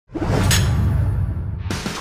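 Intro sound effect: a deep whoosh that starts suddenly, with a sharp hit about half a second in.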